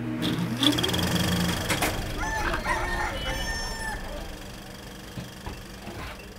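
A rooster crowing, with curving, pitched calls over the first four seconds that then fade away.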